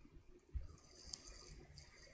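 Faint rustling and scratching of a hand rubbing a knit beanie, after a soft low thump about half a second in.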